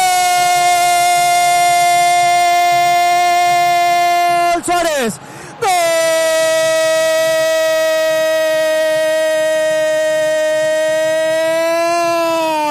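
A radio football commentator's drawn-out goal cry, 'gol', held on one steady pitch in two long breaths: a note of about four and a half seconds, a short breath, then a second, slightly lower note of about six and a half seconds. The cry signals a goal just scored.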